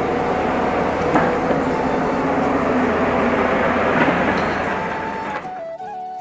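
Loud, steady rushing roar with a few faint knocks. It fades out about five seconds in as background music with steady held notes begins.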